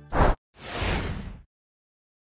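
Whoosh sound effects of an animated logo transition: a short, sharp swish, then a longer swell of rushing noise that cuts off about a second and a half in.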